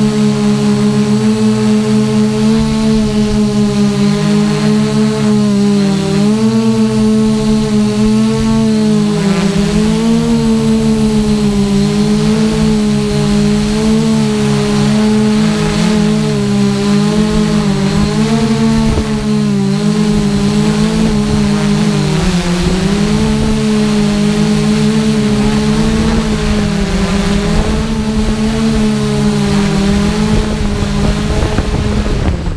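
Electric motors and propellers of a Y6 hexacopter droning steadily, their pitch wavering up and down as the throttle shifts, with a thin high whine over it. Heard up close from the camera mounted on the craft.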